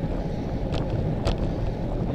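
Wind rumbling on the microphone of a camera mounted on a moving road bike, with steady road noise underneath. Two brief clicks come about half a second apart near the middle.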